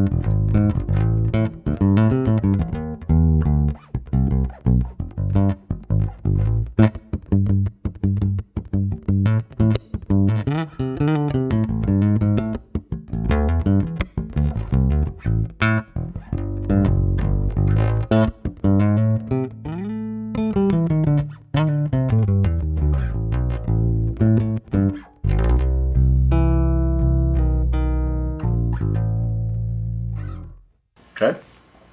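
Ibanez ATK810 active electric bass played solo with the fingers on the neck pickup, mid boosted all the way up with bass and treble centred. A fast run of plucked notes, a slide down and back up about two-thirds of the way through, then held notes left ringing near the end that fade away.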